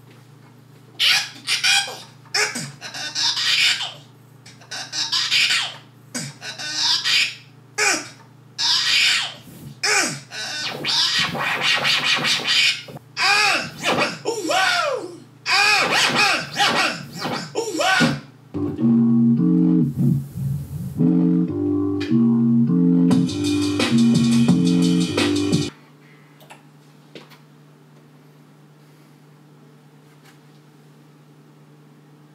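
Sounds from a vinyl battle record on a turntable, played through a DJ mixer and speaker while being auditioned and scratched: short choppy vocal and effect snippets with sweeping pitch. Then a stepping electronic melody of tones cuts off suddenly, leaving a low steady hum.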